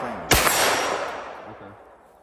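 A single 9mm pistol shot about a third of a second in, its echo fading away over the next second and a half.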